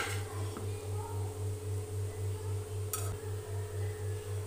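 Soft background music: a low pulsing drone at about three pulses a second under a steady held tone, with a single light click about three seconds in.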